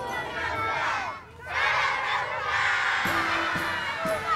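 A large group of children shouting and cheering together, with a brief lull a little over a second in before the shouting rises again; music plays underneath.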